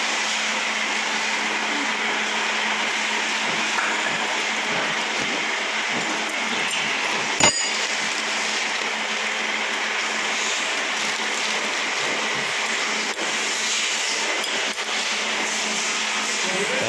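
A single sharp metallic clink, a motorcycle's clutch friction plates knocking together in the hand, about seven and a half seconds in, over a steady rushing noise.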